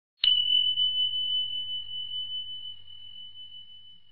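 A single high bell chime struck once just after the start, ringing on one clear tone and slowly fading away.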